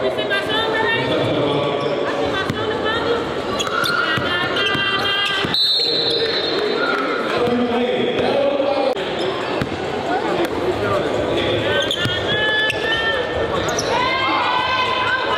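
A basketball bouncing on a hardwood gym floor as it is dribbled and checked, with people's voices talking over it in the echoing hall.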